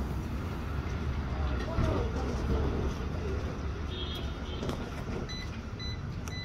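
Breath test on a handheld breathalyzer: steady low rushing noise of a man blowing into the device, with short high electronic beeps from the breathalyzer about four seconds in and again twice near the end.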